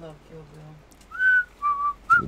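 Whistling: two short, steady whistled notes, a higher one about a second in, then a slightly lower one.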